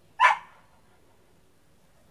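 A dog barks once, short and loud, just after the start; otherwise only faint background.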